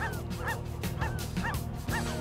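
Seabird calls: short, arched honking notes repeated about twice a second, over soft background music with held low notes.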